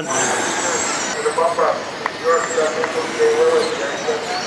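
Electric RC dirt oval cars racing on a dirt track: high-pitched electric motor whine over a steady noise of tyres on dirt, with faint voices in the background.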